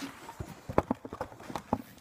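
Handling noise of the recording phone as it is picked up and set upright after falling: a string of irregular knocks, taps and rubs on the phone's body.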